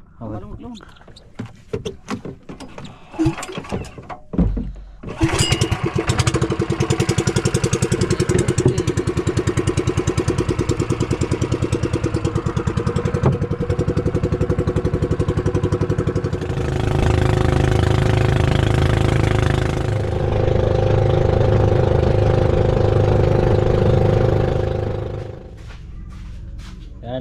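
Small outrigger boat's engine starting abruptly about five seconds in and running with a fast, even beat, growing louder about two-thirds of the way through; it stops suddenly just before the end. A few scattered knocks come before it starts.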